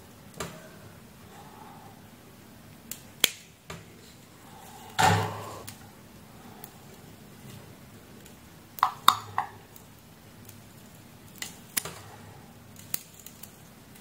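Scattered light clicks and scratches of steel tweezers picking at the cord lacing and sleeved leads on a fan motor's stator winding. There is a louder scrape about five seconds in and a quick run of three clicks a little past the middle.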